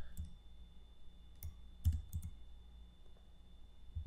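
About five short clicks of a computer mouse, one near the start and a quick cluster around the middle, over a faint steady hum.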